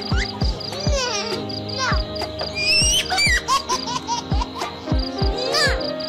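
Background music with a steady kick-drum beat and held notes, with quick high chirping glides over it.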